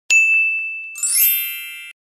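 Editing sound effect: a bright, high ding that rings on and fades. About a second in, a shimmering chime flourish sweeps upward, then cuts off suddenly.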